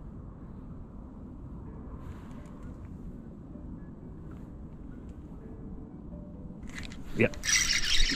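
A steady low rumble of open-air background noise, then, about seven seconds in, a sudden loud burst of rustling handling noise as the angler strikes into a bite and grips his spinning rod and reel.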